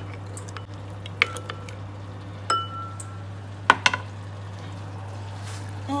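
Metal spoon stirring liquid in a glass bowl, clinking against the glass a few times; one strike near the middle rings briefly. A steady low hum runs underneath.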